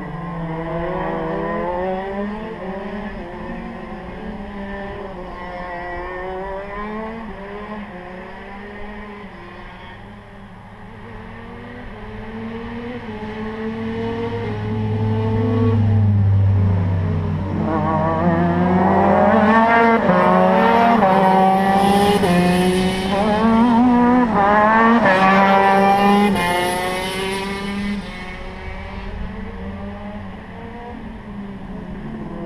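Two-stroke 125 cc KZ shifter kart engines at high revs, their pitch repeatedly rising and falling through gear changes and corners. The sound swells in the second half, is loudest about two-thirds of the way through, then drops back shortly before the end.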